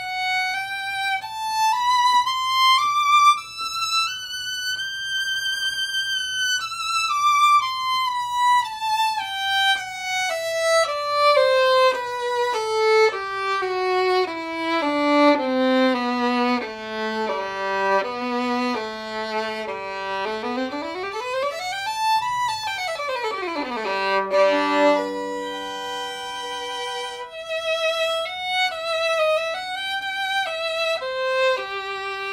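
Solo violin, a Holstein Premium Bench David strung with Thomastik PI strings, bowed unaccompanied. It climbs note by note to a high peak and then steps slowly all the way down to its lowest notes. About two-thirds of the way through it makes a fast run up and back down, holds low notes that sound together, and starts a new phrase near the end.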